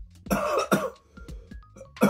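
A man's harsh, throaty exhale, like a rasping cough, about half a second long just after the start: his reaction to the burn of a sip of straight barley shochu. Light background music with short plinking notes runs underneath.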